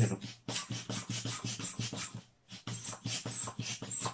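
Quick, short puffs of breath blown into a punctured long modelling balloon held at the lips.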